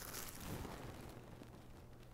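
Faint rustling of plastic-wrapped card packs being handled, fading away within the first second, over a low steady hum.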